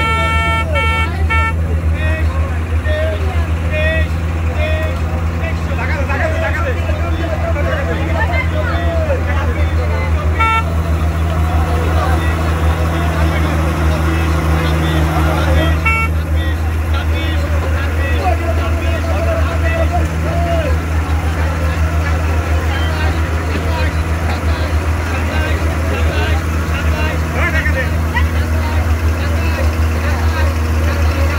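Diesel engine of a tracked hydraulic excavator running with a steady deep drone as the machine creeps forward. A horn gives a few short toots in quick succession near the start, then two brief single toots later.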